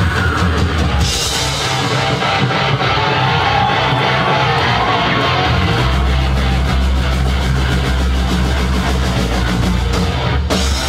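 Live heavy rock band playing loud: electric guitar, bass guitar and drum kit, with the bass getting heavier about six seconds in.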